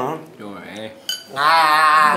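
Dishes and cutlery clinking lightly at a meal table, then, from about a second and a half in, a loud, held, wavering 'aaah'-like vocal note.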